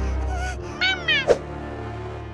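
Cartoon sound effects over steady background music: a short, high, falling cry about a second in, followed at once by a sharp click.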